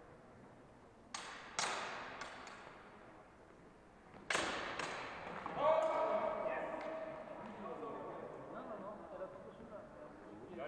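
Swords clashing in a fencing bout: a few sharp clanks about a second in, then a louder run of clashes about four seconds in, each ringing on and echoing in the large hall. A voice then calls out loudly for several seconds.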